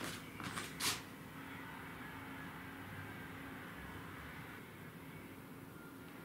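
A few sharp knocks in the first second as the wooden slat table is handled, then faint, steady rubbing as a rag wipes along the glued slats, over a low steady hum.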